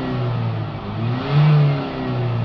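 Ford Transit Connect's 1.5 diesel engine being blipped in short rev spikes after a DPF cleaning. It drops back from one rev, then climbs to a peak about one and a half seconds in and falls away again.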